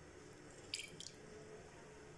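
Two faint drips of kewra essence falling into a steel pot of sugar water, about a quarter second apart, not long after the start; otherwise near silence.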